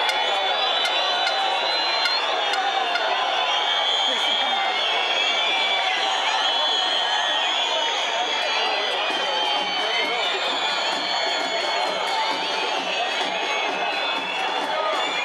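Football stadium crowd: many fans' voices shouting and chanting together at a steady loud level.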